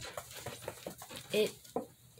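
A dog panting quietly in short, irregular puffs.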